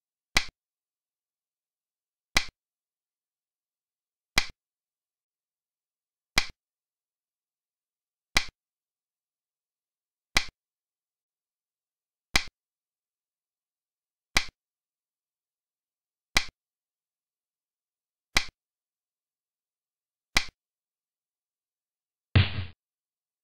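Xiangqi game-replay move sound effect: a sharp click as each piece is placed, repeating evenly every two seconds, eleven clicks in all, with silence between.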